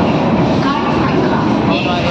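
An Indian Railways passenger train's coaches roll past a platform with a steady, loud rumble. Indistinct voices can be heard under it.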